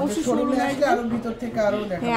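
Speech: a woman talking continuously.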